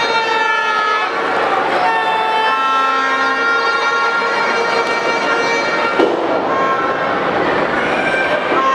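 Arena crowd at a lucha libre match: a loud, steady din with several overlapping long-held tones from the stands, each lasting about a second, thinning out after about six seconds.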